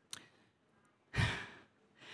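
A woman breathing out into a close microphone: a short click at the start, then about a second in a loud sigh-like exhale with a breathy pop on the mic, fading within half a second.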